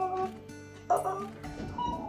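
Background music with sustained notes, over which a woman's voice gives three short, excited yelps about a second apart.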